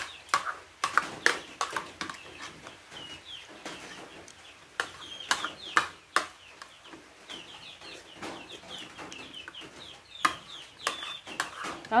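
Metal spoons clinking and scraping against plates in quick irregular taps as children eat, with birds calling in short chirps in the background.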